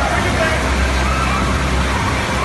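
Water park pool ambience: a steady rushing noise with a low rumble, and voices of children and adults calling and talking over it.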